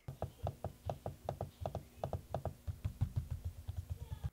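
HP Omen 15 laptop trackpad being clicked over and over, a quick run of quiet, short clicks, about five or six a second. The pad sits firmly in the chassis, so the clicks are clean, without rattle.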